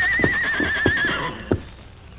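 A horse whinnying: one quavering call of about a second. It comes with a few hoof thumps as the horse paws the dirt.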